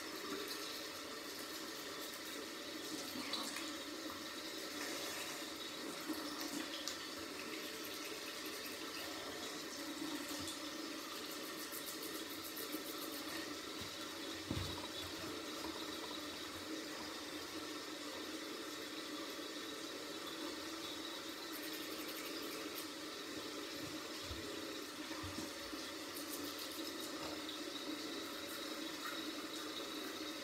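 Tap water running steadily into a sink, with a single knock about halfway through.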